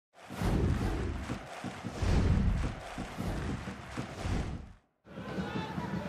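Broadcast intro sting: produced music with whooshes and several heavy bass hits for nearly five seconds, cutting off suddenly. After a moment's silence, stadium crowd ambience begins.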